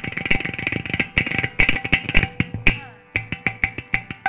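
Carnatic concert percussion, mridangam and ghatam, playing fast, dense strokes over a steady drone.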